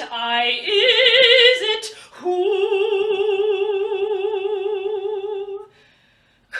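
Mezzo-soprano voice singing an operatic phrase with vibrato, then holding one long note from about two seconds in that fades away near the end.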